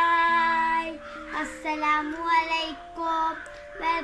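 A young girl singing: one long held note, then short phrases rising and falling in pitch, over a background keyboard tune with sustained notes.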